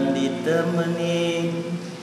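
A man's voice singing long, held notes in a chant-like melody to an acoustic guitar, fading near the end.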